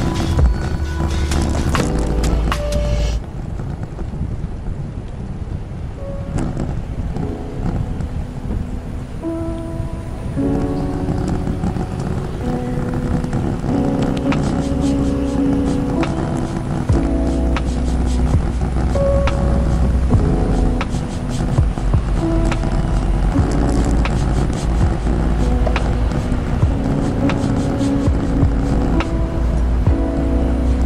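Background music with held notes over a steady deep bass line. It sounds duller from about three seconds in, when the high end drops away.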